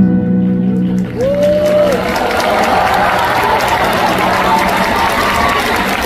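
A live band's final held chord ringing out, then a concert audience clapping and cheering, with one drawn-out shout rising above the applause shortly after it begins.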